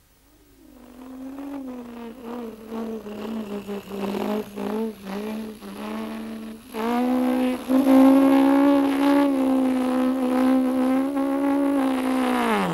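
Engine of a small vehicle towing a trailer as it drives up: a steady, rather high-pitched motor hum that grows louder, is loudest from about 7 seconds in, and holds steady.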